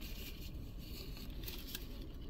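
Faint sounds of eating: quiet chewing of a soft-bun fish sandwich and soft rustles of a paper napkin, with a few small ticks, over a low steady rumble.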